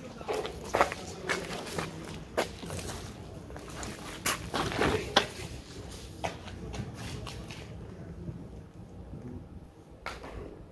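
Scattered, irregular knocks and clicks over a low outdoor background, with faint voices. Quieter after about eight seconds.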